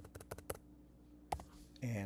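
Computer keyboard keystrokes: a quick run of several key taps in the first half second, then one more tap a little after a second in, as a number is typed in.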